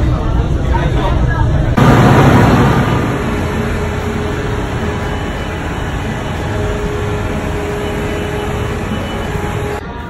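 Rumble of a moving train heard from inside the carriage. About two seconds in, it switches abruptly to louder, steady city traffic noise that gradually eases.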